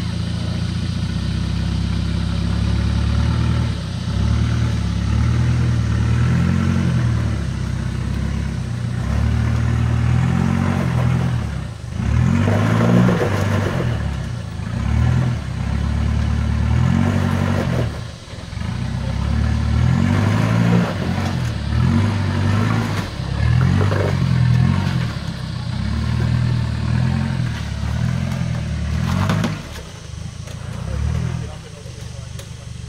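Land Rover Discovery 1's 300Tdi 2.5-litre four-cylinder turbodiesel working under load as the truck crawls up a rocky step. The revs rise and fall again and again, with two brief drops in engine sound, about 12 and 18 seconds in.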